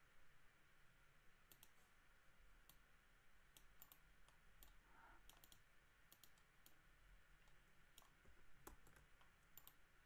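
Faint computer mouse clicks, several in quick pairs, against near silence.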